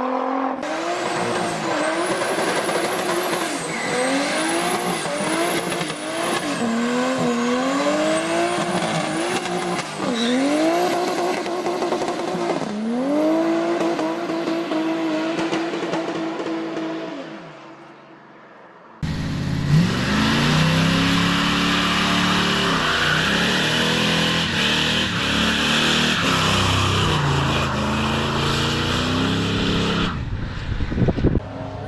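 Car engines revving hard during burnouts, the engine note climbing and dropping again and again, with a high squeal of spinning tyres. The sound fades to a lull about two-thirds in, then another car comes in with a lower engine note over the hiss of spinning tyres.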